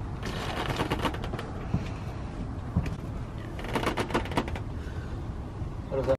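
Small clicks and taps of a plastic outboard stabilizer fin being handled and fitted onto the motor's anti-ventilation plate. They come in two short runs, one right at the start and one about four seconds in, over a low steady rumble of wind and background.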